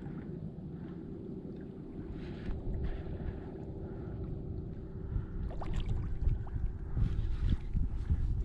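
Wind buffeting the microphone and water against a kayak hull, under a steady low hum; a few sharp clicks and knocks come in the second half as the level rises.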